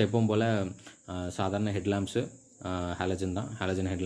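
A man talking, with a faint steady high-pitched hiss running underneath.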